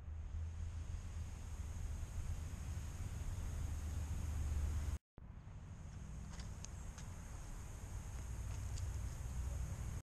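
Quiet outdoor background with a low steady rumble and a faint high steady tone. It drops out briefly about five seconds in, and a few faint high ticks come in the second half.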